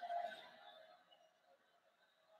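Near silence: faint room tone, with a faint trailing sound that dies away in the first half second.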